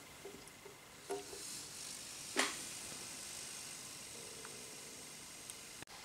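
Clicks from the controls of a hot plate magnetic stirrer as its knobs are set to heat: a soft click about a second in and a sharper one about two and a half seconds in, over faint steady hiss.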